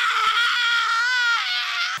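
A high-pitched, drawn-out vocal squeal: one long held note that dips lower near the end.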